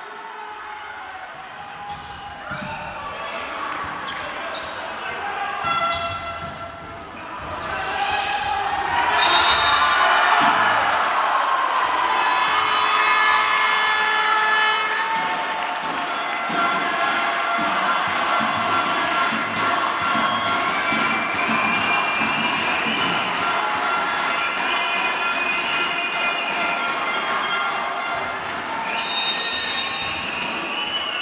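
Volleyball rally in a large hall: sharp smacks of the ball being hit and landing, over crowd shouting and cheering that swells about eight seconds in and stays loud, with a high whistle blast around then and another near the end.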